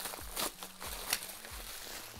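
Bubble wrap crinkling and rustling as it is unrolled by hand, with scattered soft crackles and a couple of slightly louder ones.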